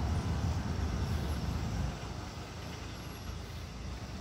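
Low rumble of road traffic going by, louder in the first two seconds and then fading off.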